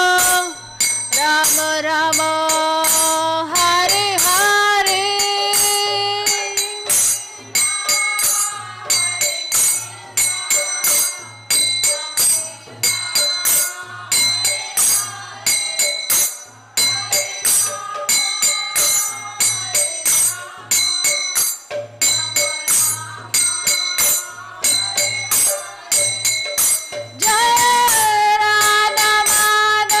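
A woman singing a devotional Vaishnava song, accompanied by small hand cymbals keeping a fast ringing rhythm and a low, evenly repeating beat.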